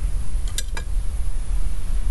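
Low, steady rumble of wind on the microphone, with a few short, faint clicks a little over half a second in.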